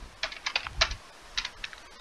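Typing on a computer keyboard: about eight light, irregular keystrokes over two seconds.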